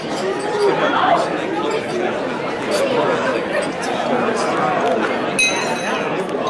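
Crowd chatter: many overlapping voices talking at once in a large hall. Near the end, a brief high ring cuts through.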